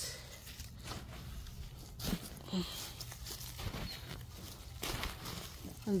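Gloved hands rummaging through loose soil, roots and dry leaves in a grow bag, with soft, irregular rustling and scraping.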